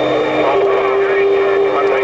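Inside a Peterbilt truck's cab, engine and road noise run under CB radio chatter. About half a second in, a single steady tone starts and holds.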